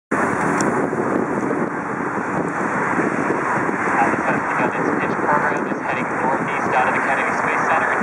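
Wind buffeting the camera's built-in microphone: a loud, steady rushing noise with no clear pitch.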